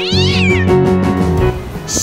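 A high, cat-like meow that rises steeply and then falls in pitch, over background music with a steady bass beat.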